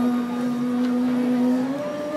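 A woman's voice holding one long, steady wordless note at a low pitch. About two-thirds of the way through it gives way to a different pitch.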